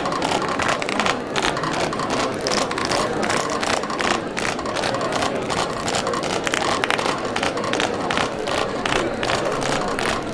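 A crowd clapping hands in a dense, irregular patter, with voices mixed in.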